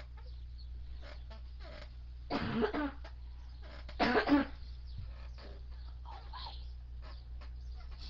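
A person coughs twice, the first about two and a half seconds in and the second about four seconds in, over a steady low hum.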